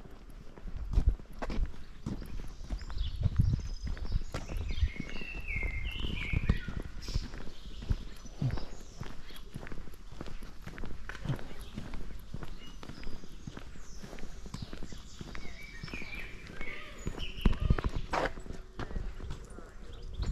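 Footsteps walking on a paved path, a run of short knocks over a low rumble from the moving microphone. Small birds chirp now and then, mostly in the first third and again near the end.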